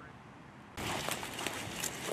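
Faint outdoor background, then about three-quarters of a second in a sudden dense rustling and crackling of dry brush and stalks as people with packs push through it on foot.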